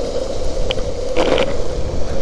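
Longboard wheels rolling fast on asphalt, a steady hum under wind buffeting the microphone, with a brief rougher burst just over a second in.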